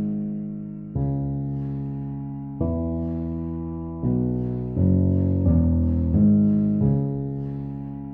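Digital piano playing a slow bassline in the low register: single held notes, each struck and left to fade, changing every second or two and coming quicker in the middle.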